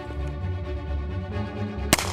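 Background music with a steady bass line, and near the end one sharp gunshot from a Colt Model 1877 Lightning double-action revolver firing a black-powder .38 Long Colt cartridge.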